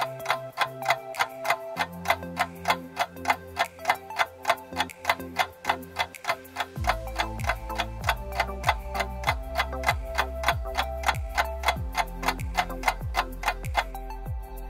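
Countdown clock ticking, quick even ticks that time the viewing of a picture, over background music whose bass comes in about two seconds in and grows heavier about halfway through.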